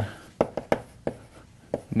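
Chalk writing on a blackboard: a handful of sharp chalk taps as the strokes land, with faint scratching between them.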